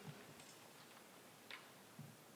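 Near silence: room tone, with a faint short click about one and a half seconds in and another at the end.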